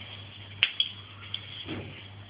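A sharp click about half a second in, then a few faint ticks, over a steady low hum; a brief low murmur of a voice comes near the end.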